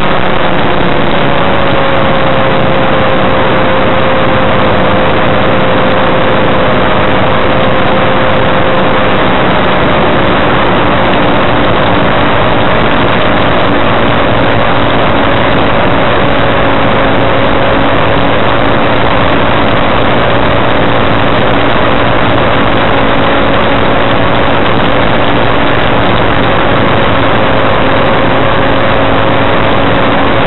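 Challenger II ultralight's engine and pusher propeller running steadily in flight, a loud constant drone heard from inside the cockpit. Its note dips slightly just at the start and then holds.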